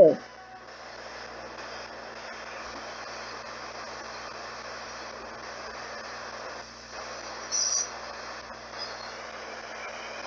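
Ghost box (spirit box) sweeping the radio band: a steady hiss of static, with one brief louder crackle about three-quarters of the way through.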